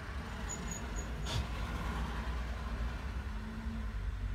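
Low, steady rumble of street traffic, with cars passing along the avenue.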